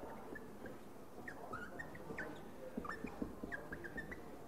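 Faint short squeaks of a marker pen writing on a whiteboard: a run of quick high strokes, busier in the second half, over low room hum.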